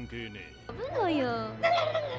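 A cartoon duck's voiced cry from the anime, one drawn-out squawk that rises and then falls in pitch, starting just under a second in.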